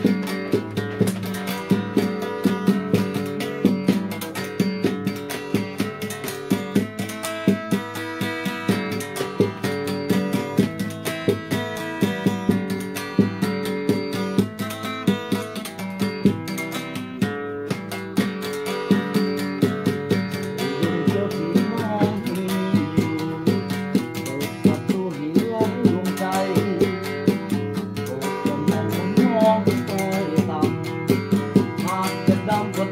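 Acoustic guitar played live, a steady rhythm of chords.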